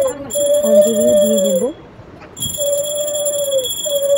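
Brass puja hand bell ringing steadily, its high ring breaking off twice, along with a stronger sustained tone sounded in blasts of about a second, each dipping in pitch at its end; everything pauses briefly just after the middle.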